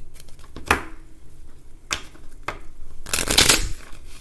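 A worn tarot deck being shuffled by hand: a few separate card snaps, then a longer dense rush of cards about three seconds in, the loudest part.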